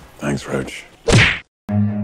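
A few quick swishes, then a louder whoosh about a second in, followed by a moment of silence. Low bowed strings, like a cello, begin near the end.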